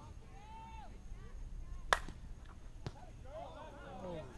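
Softball bat striking the ball once with a sharp crack, followed about a second later by a fainter knock. Players' voices call out around it.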